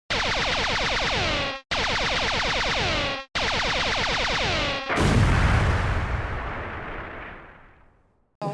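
Produced intro sound effect: three identical bursts of many quickly falling tones, each about a second and a half long and cut off sharply, then a loud boom that fades away over about three seconds.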